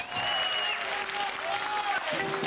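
Television studio audience applauding and cheering, with a shrill whistle over the clapping in the first second.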